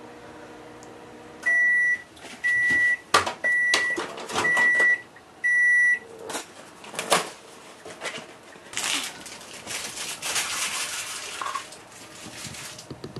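Microwave oven running with a steady low hum that stops about a second and a half in, followed by five short high beeps signalling the end of the heating cycle. Then come clicks and knocks as the door is opened and the dish is handled, and a stretch of rustling near the end.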